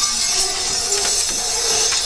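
Clear plastic sleeve and transfer sheets crinkling and rustling as they are handled and pulled apart.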